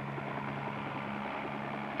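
Light piston-engined helicopter hovering: a steady low engine drone with a faint, rapid, even beat from the rotor.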